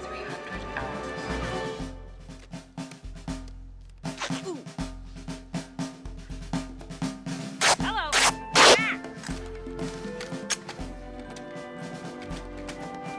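Film soundtrack music with a drum beat and sharp percussive hits. About eight seconds in, two loud, short vocal cries with bending pitch stand out over it.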